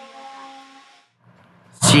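Steady pitched hum with a hiss from the hybrid train standing at the platform with its door open; it cuts off about a second in.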